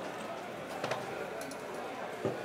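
Two ten-sided percentile dice rolled into a felt-lined dice tray: a few faint, soft clicks and taps as they tumble and settle.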